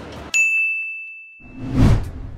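A bell-like ding sound effect that strikes suddenly and rings out, fading over about a second. Near the end a rising whoosh swells up and cuts off.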